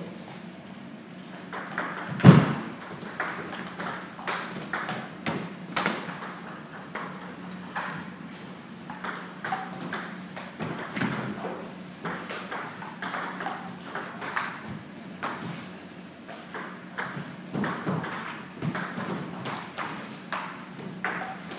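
Table tennis ball clicking off bats and the table in rallies, the clicks coming irregularly, several a second at times. One louder thump about two seconds in, and a steady low hum underneath.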